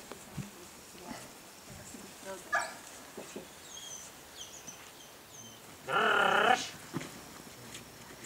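A single loud cry, about half a second long, about six seconds in. Small birds chirp faintly before it.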